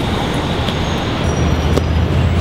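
Steady outdoor background noise with a low rumble that grows stronger in the second half, like distant road traffic.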